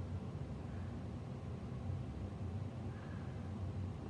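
Steady low room hum with no distinct events.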